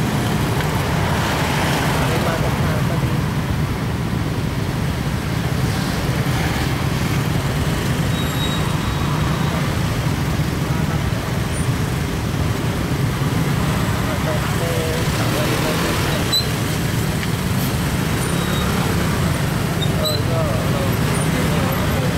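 Steady low rumble of slow, congested motorcycle and car traffic heard from among the motorbikes, engines running at low speed without a break.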